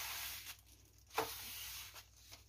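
Plastic mailer packets rustling and sliding across a wooden tabletop as they are pushed around by hand, in two stretches: one for about half a second at the start, then a light knock and a second, longer stretch in the second half.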